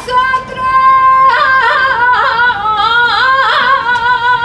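A saeta: a solo voice singing unaccompanied, holding one long note and then, about a second in, winding into a wavering, ornamented run of notes.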